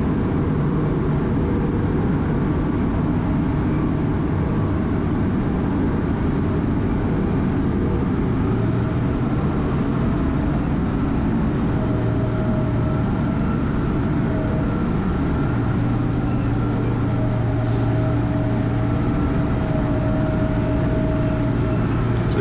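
MacLean underground rock bolter running steadily as it trams slowly forward in the cab, its low engine and drivetrain hum strengthening in the second half, with a higher whine coming and going over it.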